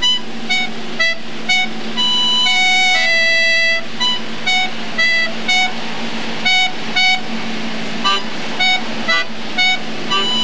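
Piano accordion playing a tune: a few longer held chords at first, then short, clipped chords about twice a second.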